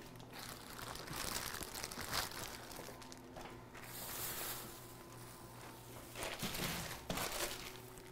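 Faint crinkling and rustling of plastic grocery bags of potatoes being handled, with light handling sounds in a quiet kitchen.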